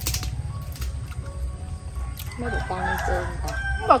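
A rooster crowing once in the second half, a drawn-out call lasting about a second and a half, over a low steady rumble.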